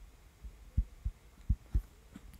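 Computer keyboard keystrokes heard as a handful of soft, muffled low thuds, irregularly spaced, as short terminal commands are typed.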